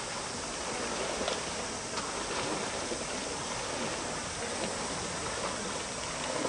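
Steady wash of water noise from the pool as breaststroke swimmers race, with a few faint splashes.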